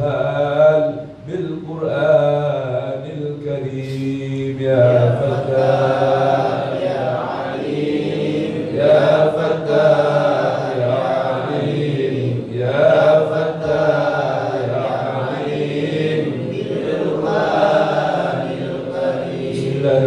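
Melodic Arabic chanting of devotional verses blessing the Prophet (salawat). The voices hold long, wavering phrases with short breaks about every four seconds.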